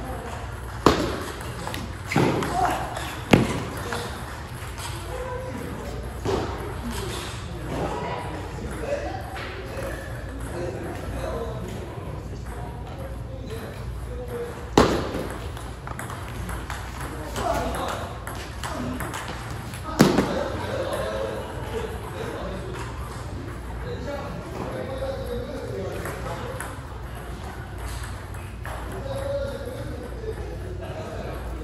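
Table tennis ball hits: three sharp clicks about a second apart in the first few seconds, then single clicks about halfway and two-thirds in, over voices in the hall.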